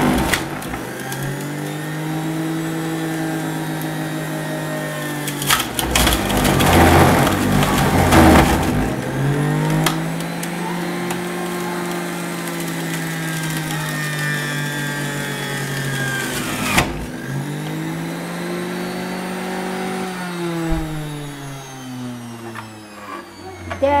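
Electric centrifugal juicer running as carrots are pushed through it, the motor's hum dipping in pitch under each push and recovering. It is loudest about six to nine seconds in, with a rough grinding as the carrots hit the spinning cutter disc. There is a sharp click near two-thirds of the way through, and the pitch slides steadily down over the last few seconds.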